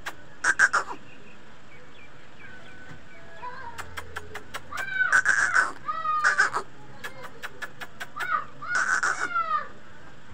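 A small bird, a chick, calling in harsh, repeated calls in several bouts through the second half, with a few short clicks before the calls.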